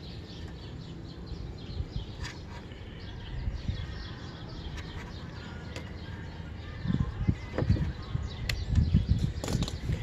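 Small birds chirping in the background in short, repeated high calls, with a few light clicks. From about seven seconds in, low rumbling bursts of noise on the microphone.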